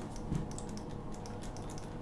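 Elevator door-open/close push buttons clicking as a finger presses them over and over, the clicks coming faster in the second half, over a steady low hum.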